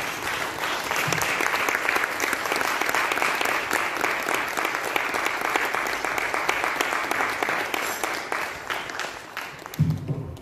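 Audience applauding in a hall: dense, steady clapping that thins out and fades near the end.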